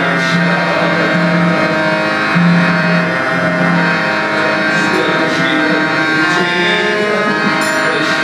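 Harmonium playing sustained reed chords over a low held note, accompanying a man singing a devotional prayer song (prarthana).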